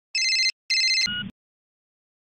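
Electronic telephone ring: two short warbling rings in quick succession, followed by a brief, lower two-tone beep.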